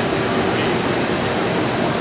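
Steady background din of a busy exhibition hall: continuous hum and hiss of running machines and ventilation, with indistinct voices.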